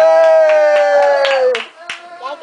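A long, high-pitched cheering shout held on one slightly falling note for about a second and a half, with several hand claps, then stops abruptly.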